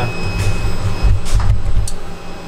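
Low rumble and rustle of a handheld camera being moved in close, over the steady hum of a CNC lathe. The rumble drops away at the end.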